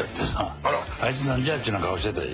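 Speech only: men talking.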